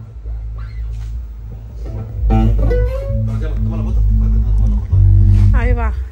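Electric bass and acoustic-electric guitars played through PA speakers during a band's sound check, with deep sustained bass notes that get louder about two seconds in. A brief spoken word near the end.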